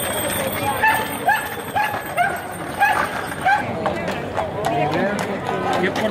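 Horse hooves clopping on stone paving as a horse-drawn carriage passes, over crowd chatter. Through the first half there is a run of about seven short, evenly spaced high calls, a little under half a second apart.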